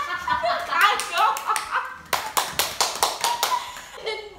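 Young women laughing hard, joined about a second in by a run of quick hand claps, about five a second, that stops shortly before the end.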